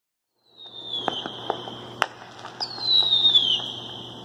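Fireworks: two whistling shells, each whistle falling in pitch, with several sharp cracks and bangs among them over a low steady hum.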